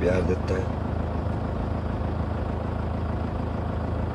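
Steady low hum of a car's engine running, heard from inside the cabin.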